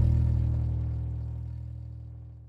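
Soundtrack boom: the low, rumbling tail of a single deep hit, fading steadily to almost nothing near the end.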